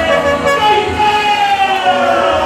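Loud siren-like wailing tones, several at once, slowly gliding up and down in pitch over crowd noise.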